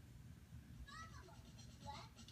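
Faint sound from a television's speaker as an animated jungle promo begins: low hum, then a short, high cry falling in pitch about a second in, with a smaller one near the end.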